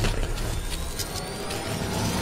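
Synthesized sound design for an animated logo intro: a steady low rumble and noise wash with a faint whistle rising slowly in pitch, and a couple of brief crackles about a second in.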